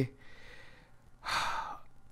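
A man's breath taken between sentences: a faint breathy rush early on, then a louder, short breath about a second and a half in.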